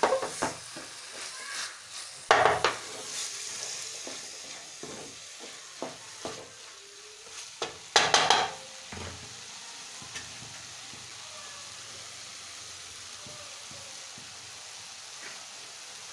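Wooden spatula stirring and scraping minced chicken in a metal pan, with the pan's frying sizzle under it; the stirring stops about nine seconds in, leaving only a steady sizzle.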